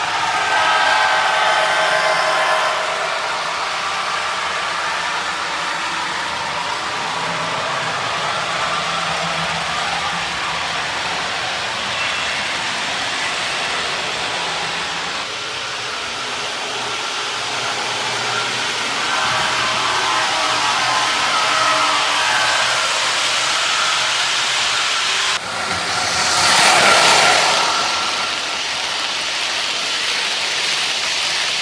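Lionel O-gauge American Orient Express passenger train running on three-rail track: a steady rolling rumble of wheels on the rails, with the locomotive's electronic diesel engine sounds. The train passes close by at speed and is loudest near the end, swelling and fading.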